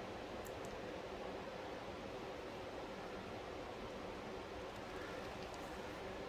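Quiet room tone: a steady faint hiss with a low hum, and a couple of faint light ticks about half a second in.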